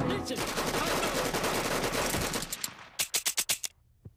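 Cartoon rotary machine gun (minigun) firing a long rapid burst, which stops about two and a half seconds in; a short quick run of a few separate cracks follows.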